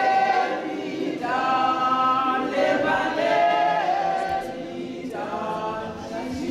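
A choir singing unaccompanied, many voices holding long notes in phrases with brief breaks between them.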